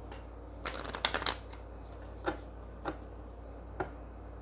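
A deck of oracle cards being shuffled by hand: a quick flurry of card clicks about a second in, then three single sharp card snaps over the next few seconds.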